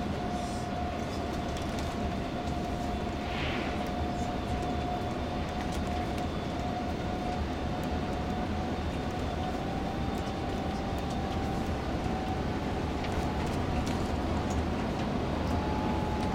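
Inside a moving tour coach: steady engine and road rumble at cruising speed, with a thin whine that creeps slightly up in pitch and a few small rattles.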